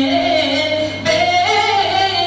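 A man's voice singing a devotional naat verse through a microphone, holding long drawn-out notes whose pitch slides upward about a second in.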